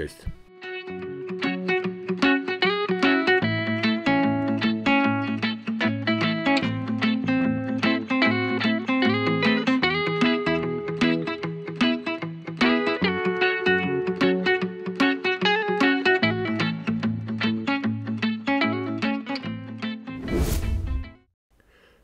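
Background music led by plucked guitar with a steady beat. Near the end it gives way to a brief rushing noise and stops.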